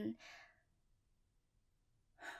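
A woman's short, soft breathy sigh in the first half-second, then near silence.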